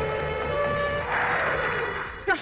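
Dramatic background score from an old Hindi film: held notes, joined about a second in by a swelling hiss.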